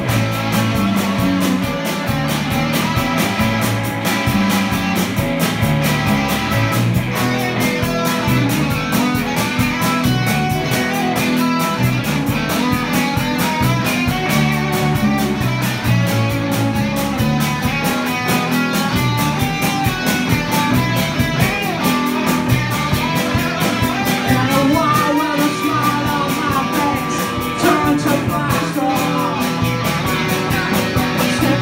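Live rock band playing: electric guitars over bass guitar and a drum kit, with a steady beat.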